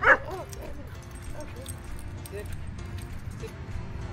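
A nine-month-old Border Collie–Australian Shepherd mix barks once, sharply, right at the start. A few fainter whines follow within the first second.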